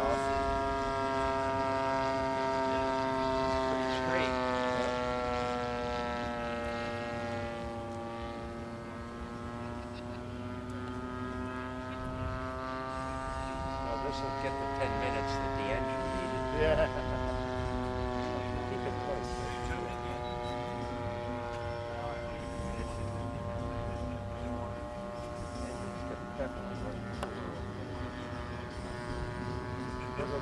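VVRC 20cc gasoline twin engine of a radio-control model airplane running steadily in flight, its pitch drifting slowly lower around the middle and then rising again.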